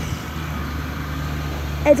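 Car engine idling, a steady low hum.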